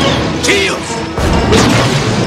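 Film-trailer music under crash and explosion sound effects of a starship taking hits in battle: a sharp crash about half a second in, then a heavy low rumble from about a second in.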